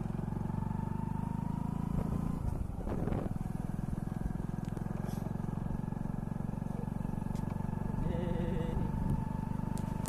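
Engine of a moving road vehicle running steadily, with a constant high whine above the low drone, heard from on board.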